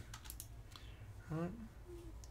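A few faint clicks from a computer mouse and keyboard in the first second, then a man briefly says "all right."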